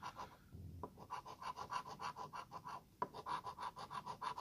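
Coin scraping the latex coating off a lottery scratch-off ticket, in quick, even back-and-forth strokes of about five a second. There is a short pause before the first second and another about three seconds in.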